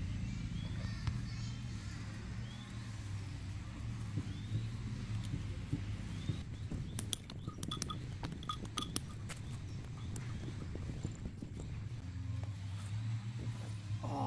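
A quick run of sharp clicks and knocks about seven to nine seconds in, as the folding cot's aluminium frame and legs are handled. Under it runs a steady low hum, with short rising chirps now and then.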